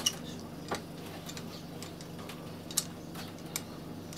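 A few short, sharp clicks and knocks, spaced irregularly, over a faint steady low hum.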